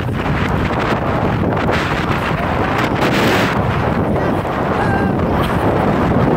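Strong tropical-storm wind buffeting a handheld microphone in a steady, loud rush, with surf breaking underneath.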